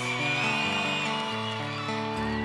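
Live acoustic band instruments playing a run of sustained notes that step to a new pitch every half second or so, with a thin higher tone held above them.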